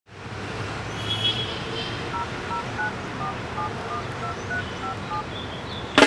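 Phone keypad dialing tones: about ten short two-note beeps in quick succession, starting about two seconds in, over a steady background hum.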